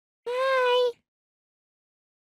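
A voice saying one drawn-out, high-pitched "hi", held at a steady pitch for under a second starting about a quarter second in.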